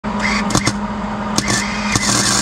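Arc welder tack-welding a universal-joint end cap on a UTV's front drive shaft: a steady crackle and buzz with a few sharp pops.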